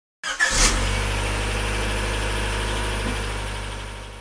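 Car engine starting with a short loud burst about half a second in, then idling steadily and fading out near the end.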